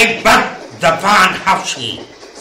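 A man's voice in a radio drama, speaking in two short outbursts.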